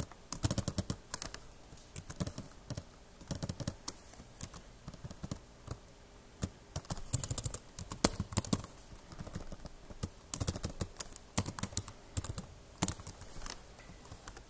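Computer keyboard typing in short irregular runs of keystrokes with brief pauses between them.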